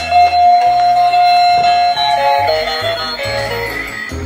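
A dancing plush Christmas-tree toy playing its electronic tune: one long held note, then a stepping melody from about two seconds in, over a steady low bass line.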